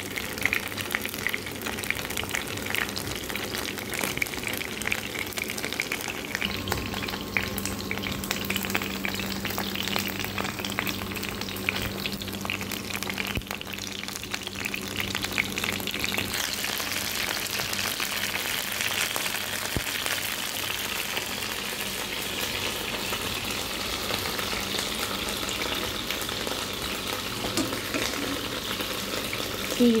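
Cornstarch-coated chicken pieces shallow-frying in hot oil in a nonstick pan: a steady sizzle and crackle, turning brighter about halfway through.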